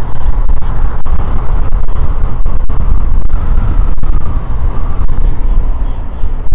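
Motorcycle riding along at steady road speed: a loud, steady low rumble of wind, engine and road noise on a helmet-mounted microphone, with faint scattered clicks.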